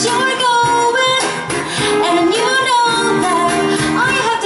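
Live female vocal singing a pop song, accompanied by guitar and a hand-played cajon.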